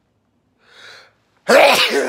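A man sneezes loudly about a second and a half in, after a faint breath in. He is ill, his immune system run down.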